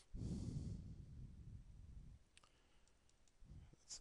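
A breath out close to the microphone, then a few faint, sharp clicks of a stylus on a drawing tablet a little past halfway as a structure is sketched.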